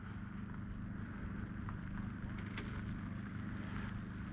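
A steady low mechanical hum with a fine, rapid pulse, like an engine running at idle, with a few faint ticks over it.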